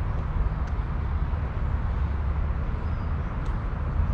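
Steady low outdoor background rumble with a faint hiss above it, and a couple of faint brief ticks.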